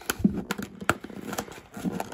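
Cardboard booster box being handled and pried open by hand: about four sharp clicks and taps, with soft rustling of cardboard between them.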